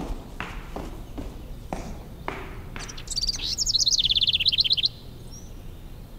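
A songbird twittering: a loud, rapid run of high chirps lasting nearly two seconds from about halfway through. It is preceded by a few single short, sharp sounds about half a second apart.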